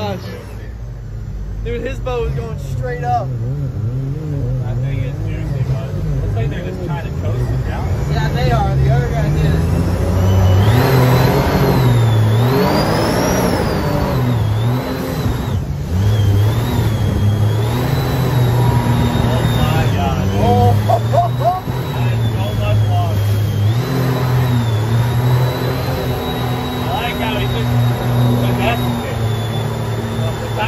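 Supercharged mini jet boat engine running hard through river rapids, its pitch rising and falling with the throttle, over rushing water and spray.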